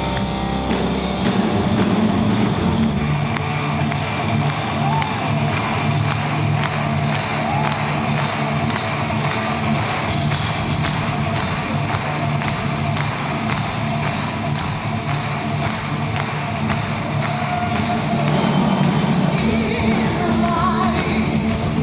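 Symphonic metal band playing live in a large hall, with guitar, drums and keyboards and a woman singing at times, heard from among the audience.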